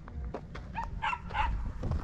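Wind rumbling on the microphone, with faint footsteps on gravel and a few short, faint barks from a distant dog about a second in.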